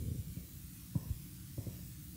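Low steady room hum, with two faint soft thumps about one second and about one and a half seconds in.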